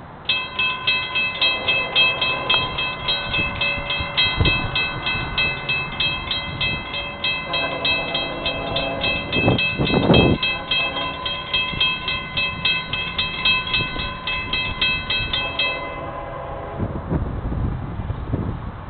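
Railroad grade-crossing warning bell ringing in rapid, even strokes, about three a second, as the crossing activates for an approaching train; it starts just after the opening and stops about two seconds before the end. A louder rushing sound passes about ten seconds in.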